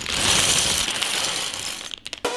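A plastic bag of LEGO Technic pieces being emptied onto a wooden tabletop: a continuous clatter of small plastic parts spilling out and settling, fading slightly toward the end.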